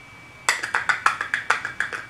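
A rapid run of light clicks and taps, about eight a second, starting about half a second in: small hard makeup containers and a brush being handled on a desk.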